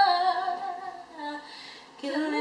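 A young woman singing a cappella: a wordless held note that wavers and fades out about a second in, followed by a short, soft lower note.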